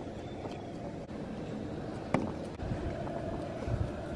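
Low, steady outdoor rumble with a faint hiss, and one sharp click a little over two seconds in.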